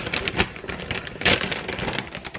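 Plastic bag of shredded mozzarella crinkling as it is handled, a run of irregular crackly clicks.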